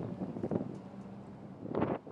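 Wind buffeting the microphone over a low, steady engine hum, with scattered irregular knocks and a louder gust or thump near the end.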